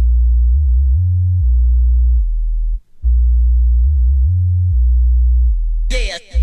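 Solo sub-bass line from an oldskool breakbeat hardcore track, with drums and vocals dropped out: deep, pure sustained bass notes stepping between a few pitches. It cuts out for a moment a little before halfway, then comes back.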